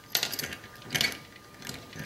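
C-clamp being screwed tight on a metal jig-head mould: short metallic clicks and scrapes as the screw and handle turn, in three bursts about a second apart.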